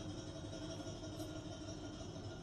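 A faint, steady mechanical hum: a low rumble with several steady tones at different pitches over it.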